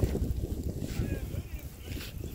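Wind buffeting the microphone in the open, a dense low rumble that rises and falls.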